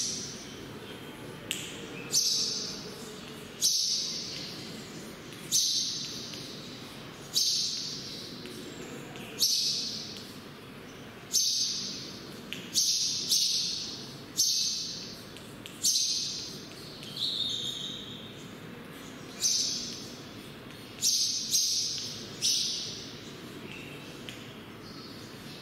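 Chalk strokes on a chalkboard. Each is a sharp tap followed by a scratchy scrape that fades within about a second, repeating every one to two seconds as letters are written.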